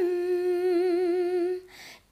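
Unaccompanied female voice holding one long sung note with vibrato. It ends about a second and a half in, followed by a quick intake of breath.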